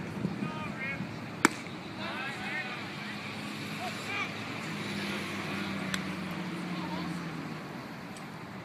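Outdoor baseball game ambience: scattered voices calling out from the field and stands over a steady low hum, with one sharp crack about a second and a half in and a fainter one near six seconds.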